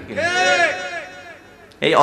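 A man's voice holding one long, high-pitched drawn-out call that rises and then falls in pitch for about a second before fading away.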